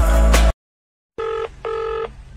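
R&B-style pop music cuts off abruptly, then after a moment of silence a telephone rings: two short rings in quick succession, the double-ring pattern of a phone line ringing through.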